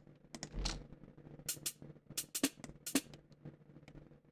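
A chopped-up drum break played back quietly: a handful of sharp, irregular drum hits.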